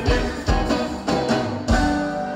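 Live band music with electric guitars and drums: heavy drum hits about every half second, the last and loudest near the end, where a chord starts ringing on.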